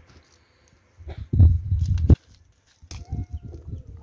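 Handling noise as a plastic water jug is picked up: low rustling and knocking with a couple of sharp clicks, between about one and two seconds in. Near the end there is a faint, thin drawn-out tone.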